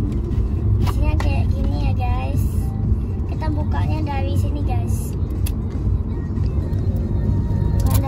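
Steady low rumble of a car's cabin with the engine running, under the clicks and crinkles of a cardboard toy box and plastic capsule being handled. A child's voice comes in briefly twice.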